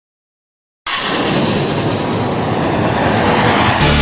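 Dead silence, then under a second in a loud rushing noise cuts in suddenly and carries on, easing a little near the end. It is the whoosh-like sound effect of an animated studio logo intro.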